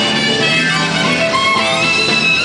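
Live smooth jazz band playing: alto saxophone and acoustic guitar out front over electric bass and drums, with a note sliding upward near the end.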